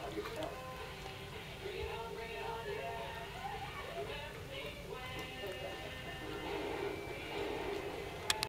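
A television playing in the background: music and voices.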